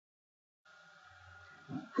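Near silence, with a dead-quiet gap at an edit followed by faint steady room hiss and hum. Near the end a brief low sound leads into a man's speech.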